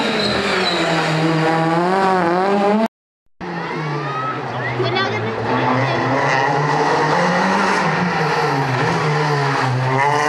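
Rally car engines at high revs: a Citroën Xsara rally car accelerating with revs climbing steadily, cut off abruptly about three seconds in. After a half-second gap another rally car engine is heard, its revs rising and falling through gear changes as it comes up the road, and a Renault Clio rally car arrives near the end.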